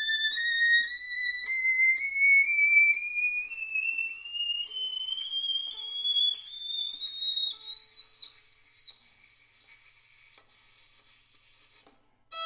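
Bohemian violin by Emmanuel Hüller bowed very high up, one note climbing slowly and steadily in pitch into the top of the instrument's range, with a slight waver. It grows softer as it rises.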